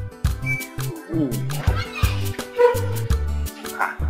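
Background music with a steady beat. About a second in, a few short cries that glide in pitch sound over it.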